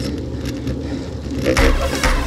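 Low, steady rumble of wind and road noise picked up by an action camera on a bicycle climbing a paved road at walking-to-jogging pace. Electronic music comes in loudly about one and a half seconds in.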